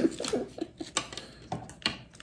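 A few light clicks and taps of small plastic candy-kit pieces being handled over a metal baking tray, with three sharp ones in the second half.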